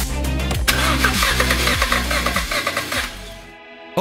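A car engine cranks and starts, over background music; the sound fades out near the end.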